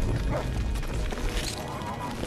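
Film soundtrack with music under short yelping, growling animal-like cries.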